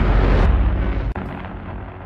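Fiery intro sound effect: a deep rumbling boom with a rush of noise that fades away, with a sharp click about a second in.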